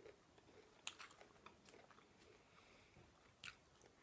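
Quiet close-mic chewing of a roasted Brussels sprout coated in duck fat, with a few sparse, soft crunchy clicks of the mouth and teeth.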